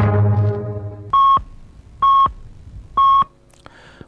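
The last chord of a string-music signature tune dies away, then three short radio time-signal pips sound about a second apart, all at the same steady pitch, marking the top of the hour.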